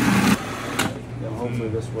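A steady low mechanical hum, with a short spoken remark near the end.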